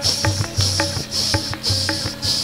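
Qawwali accompaniment: dholak drum beats with a rhythmic, high-pitched jingling pulsing about three times a second, evoking the chime of anklet bells (payal).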